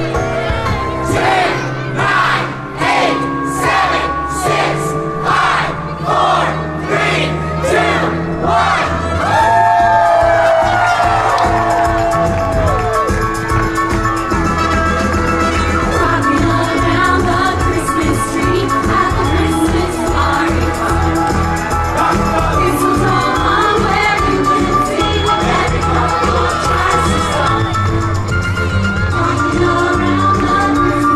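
A vocal group singing into microphones over an amplified backing track, with a steady beat in the first part, and an audience cheering.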